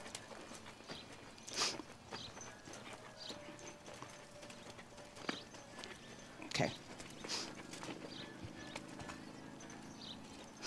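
Faint hoofbeats of a gaited horse walking on a sand arena, with a few sharper knocks scattered irregularly.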